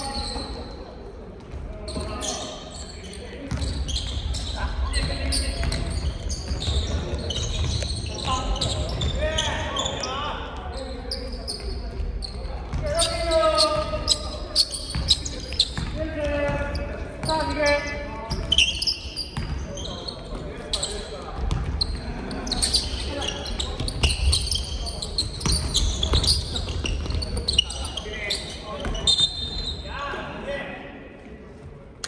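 Basketball bouncing on a wooden gym floor during live play, sharp repeated thuds, with players' voices and calls, all echoing in a large hall.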